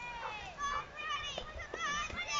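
Spectators' high-pitched shouts and calls of encouragement to passing fell runners, the words not made out.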